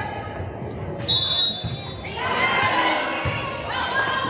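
A referee's whistle gives one short blast about a second in, with thumps of a volleyball being hit around it. From about two seconds in, many voices of players and spectators call out and cheer over each other.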